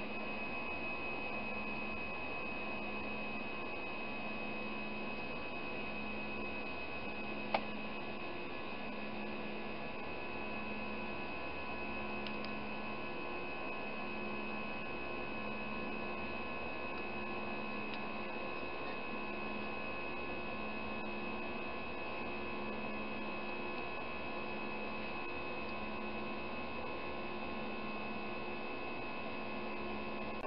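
Steady jet cabin noise of an Airbus A320-family airliner in flight: an even engine and airflow hum with several steady tones and a slow, regular throb. A single sharp click about seven and a half seconds in.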